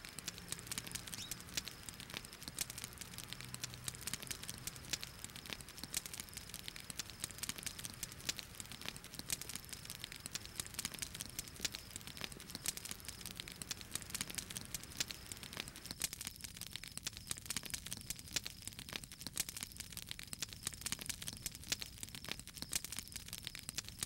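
Small wood fire crackling, with a dense run of small snaps and pops.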